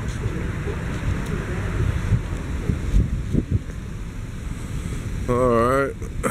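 Wind buffeting the camera microphone, a steady low rumble.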